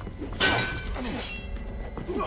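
A sudden crash of breaking glass about half a second in, with shards ringing and tinkling as it fades over about a second.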